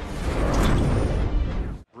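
Broadcast-graphics transition sound effect: a whoosh over a deep, low rumble that swells and then cuts off suddenly just before the next clip begins.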